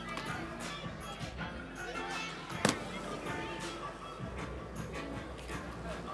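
Background music with faint crowd voices, and one sharp clack of a skateboard hitting the ground about halfway through.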